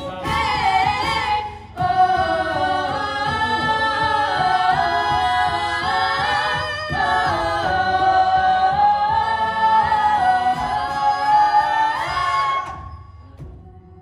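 Mixed a cappella group singing live: female lead voices over backing harmonies, with a beatboxer supplying vocal percussion. Near the end the full sound drops away to a quieter held chord.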